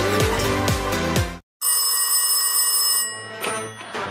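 Music with a steady beat that cuts off about a second and a half in. After a brief silence, a telephone rings for about a second and a half and then fades.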